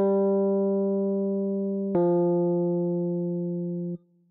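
Two sustained instrument notes played one after the other, about two seconds apart, the second slightly lower than the first: a descending melodic interval played as an ear-training question. Each note fades slowly, and the second is cut off abruptly.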